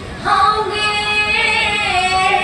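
A woman singing one long held note in Assamese Nagara Naam devotional style, coming in about a quarter second in, with the pitch dipping slightly near the end.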